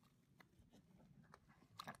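Faint wet squishing of a soapy fabric baseball cap being scrubbed by hand in a tub of sudsy water, with a few soft scattered clicks.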